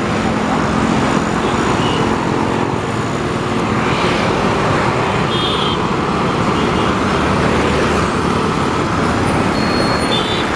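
Steady traffic noise of a busy city road, engines and tyres of passing cars and motorbikes, picked up from a moving vehicle.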